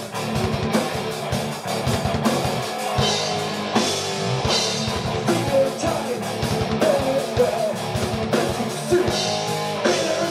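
Live rock band playing loud through a club PA: pounding drum kit and electric guitars, with a male singer's vocals coming in during the second half.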